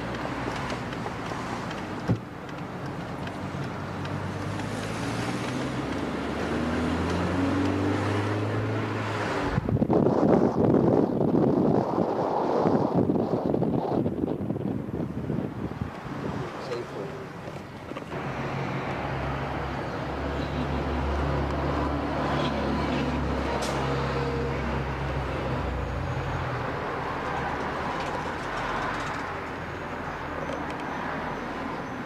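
Motor vehicle noise: a low engine hum whose pitch rises about a quarter of the way in, a louder rush of noise for a few seconds near the middle, then a steady low hum again.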